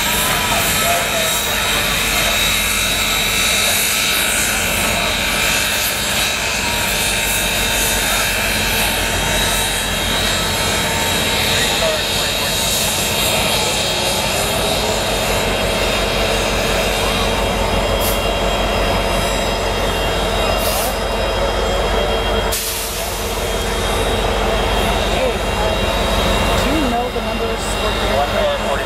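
Union Pacific Big Boy 4014 steam locomotive and its train rolling slowly past: a steady low rumble with whining tones over it, and a crowd talking alongside.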